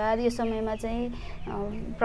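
A woman talking in a steady, continuous voice.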